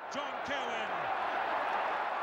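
Stadium crowd cheering, fading in and then holding steady, with a couple of shouts standing out early on.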